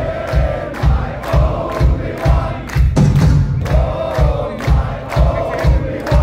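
Live rock band in a concert hall, with a steady kick-drum beat about twice a second and the crowd chanting along loudly.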